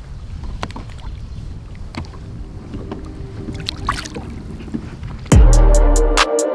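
A steady low outdoor rumble at the side of a boat, with a few faint knocks. About five seconds in, loud music with a heavy bass beat cuts in.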